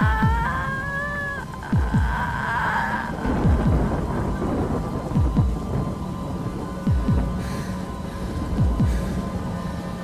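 A woman screaming, the scream ending about a second and a half in. Then pairs of low thumps come about every 1.7 s, like a slow heartbeat, over a steady rain-like hiss.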